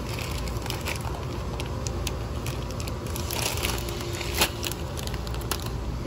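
Plastic grocery packets crinkling and crackling as they are handled, with a sharper crackle about four and a half seconds in.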